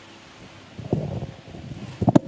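A pause between spoken lines: faint hiss from a handheld microphone, then from about three-quarters of a second in, quiet low rustling and knocking noises.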